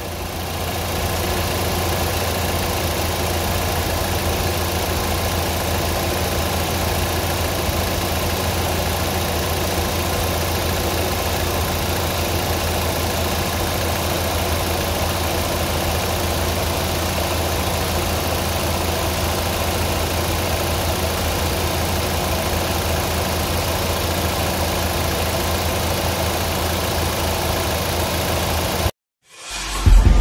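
A 2021 Kia Seltos's four-cylinder petrol engine idling steadily with the hood open. The sound cuts off abruptly near the end.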